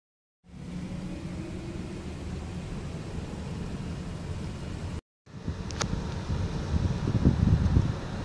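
Steady low road-traffic rumble. It drops out briefly about five seconds in, then returns with a click and a swell in the low rumble near the end.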